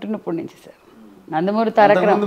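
A woman speaking, with a pause of under a second in the middle.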